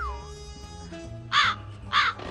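Comic crow-caw sound effect marking an awkward silence: two harsh caws about a second and a half in, after a short falling whistle-like tone at the start.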